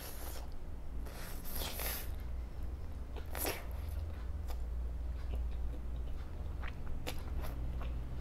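Spaghetti being slurped and chewed close to the microphone: a long slurp in the first two seconds, a shorter one about three and a half seconds in, then chewing with small wet mouth clicks.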